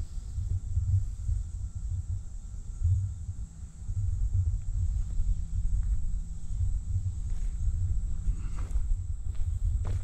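Low, fluctuating rumble of wind on the microphone, with a steady high buzz of cicadas behind it.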